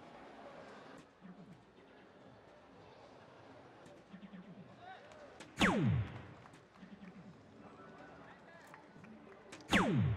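Electronic soft-tip dart machine's hit sound, played twice: a sharp tap followed by a quick falling electronic sweep, about five and a half seconds in and again near the end, each time a dart scores a single 20. Under it runs a low murmur of voices in the hall.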